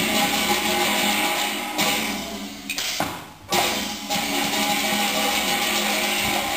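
Teochew opera ensemble music with plucked strings over percussion, dipping about three seconds in and coming back suddenly half a second later.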